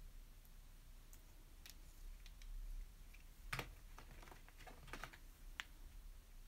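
Faint room tone with a scatter of light, irregular clicks and taps, mostly in small quick clusters from a little past halfway in.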